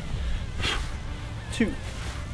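One short, sharp, forceful exhale about a third of the way into a sandbag shouldering rep, over steady low background noise.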